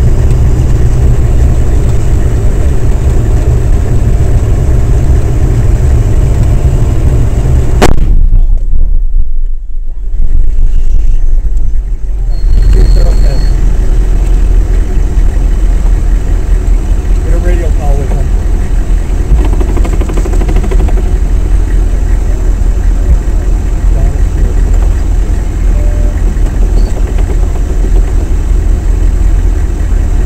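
Vehicle engine running loud and low, heard from inside the cab. About eight seconds in, a single sudden explosion beside the vehicle, a roadside bomb blast. For several seconds after it the sound goes dull and muffled, then a heavy low rumble carries on.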